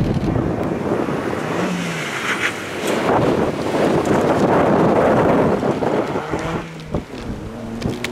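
Front-wheel-drive Toyota Yaris rally car of 1.5 litres or less driving past at speed on a tarmac stage. The engine and tyre noise build as it approaches, are loudest from about three to six seconds in as it passes, then fade as it drives away.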